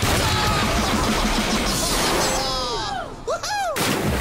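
Cartoon sound effects of a vehicle launching at speed down a track: a sudden loud rushing, crackling noise that thins out after about two and a half seconds. It is followed by several sliding, whooping tones near the end.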